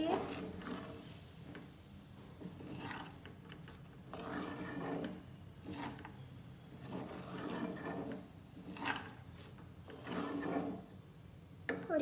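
Wooden spatula stirring cooked vermicelli upma around a nonstick kadai. It gives soft rasping scrapes against the pan in repeated strokes, one every second or two.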